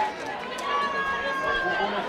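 Voices of players and people around a football pitch calling out and talking, with a few drawn-out shouts.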